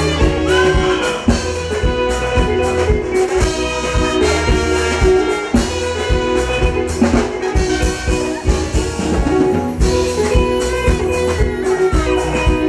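Live band playing an instrumental passage: brass, trumpet and trombone, over bass and drums, with a steady dance beat.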